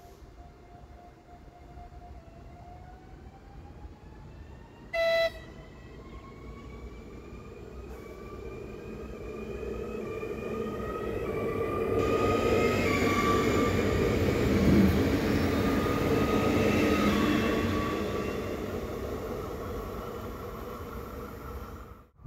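České dráhy class 650 RegioPanter electric multiple unit passing: a short horn blast about five seconds in, then the whine of its traction drive climbing in steps as it speeds up, over a building wheel rumble that is loudest as it goes by and fades after.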